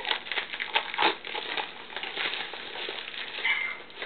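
Plastic shrink-wrap crinkling as it is pulled off a Blu-ray case, with many small irregular clicks.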